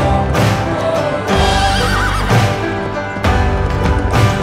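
Background music with a horse whinnying over it about one and a half seconds in, a short call with a shaking, wavering pitch.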